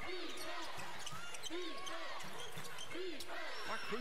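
Basketball game broadcast audio: sneakers squeaking on a hardwood court during live play, several short squeaks rising and falling in pitch, over the steady hum of a large arena.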